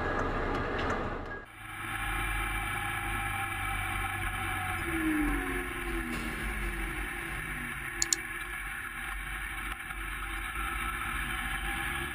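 Car driving through a road tunnel: steady engine and road noise with a low rumble, the engine's pitch falling about halfway through as it slows or changes gear. A brief double click about eight seconds in.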